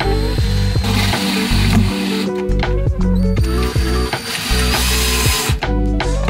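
Black+Decker cordless drill driver running as it drives screws into a cabinet hinge's mounting plate, in two runs of about two and three seconds, the second stopping shortly before the end. Background music with a steady beat plays throughout.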